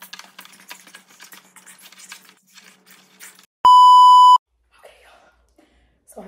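A loud, steady electronic bleep tone, under a second long, about two-thirds of the way through, of the kind edited in to cover a spoken word. Before it, light clicking and handling noise.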